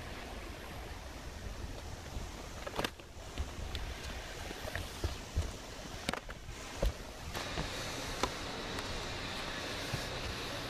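Steady wind-like noise on the microphone, with a few separate dull thumps of footsteps on sheet-metal roof panels.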